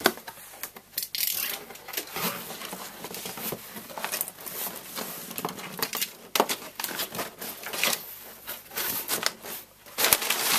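A large cardboard shipping box being opened by hand: irregular rustling, scraping and tearing of cardboard, with crinkling of crumpled kraft packing paper.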